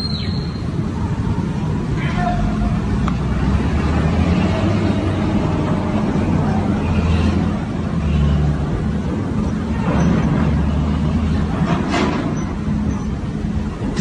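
Outdoor rumble on a handheld phone recording, a steady low noise that buffets the microphone, with faint voices now and then.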